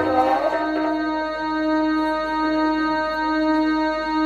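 Background music: one steady chord held on a keyboard, unchanging throughout.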